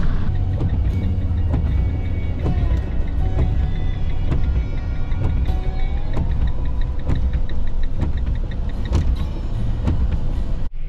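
Cabin noise of a camper van driving on a wet road: a steady low rumble with scattered knocks, and music playing along.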